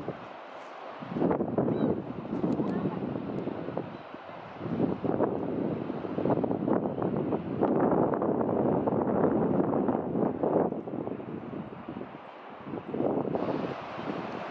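Wind buffeting the camera microphone in irregular gusts, with people's voices mixed in.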